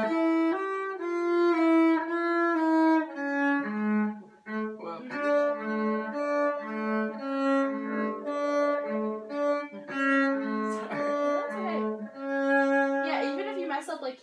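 Cello bowed by a student playing a short exercise line: a run of sustained notes, a brief stop about four seconds in, then a series of shorter, evenly spaced notes lower in pitch. The playing stumbles a little in places.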